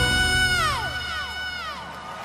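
A male singer's full-voice belted high note, an F sharp five, held steady and then sliding downward as it ends. Concert crowd cheering rises underneath as the note falls away.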